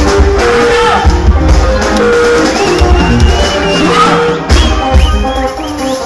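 Live sungura band playing: interlocking electric guitars over a pulsing bass guitar and drum kit. A high bending lead line sounds through the second half, and the bass drops out briefly just past the middle.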